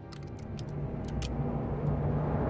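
A quick series of about six sharp metallic clicks as a rifle's parts are snapped together, over a low rumble that grows louder.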